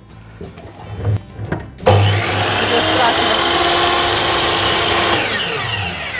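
Electric compound miter saw starting up about two seconds in and cutting through a wooden bar with a loud, steady whine, then winding down near the end.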